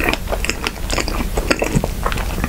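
Close-miked chewing of a mouthful of soft sandwich filled with strawberry and red bean paste: a rapid, irregular string of small mouth clicks.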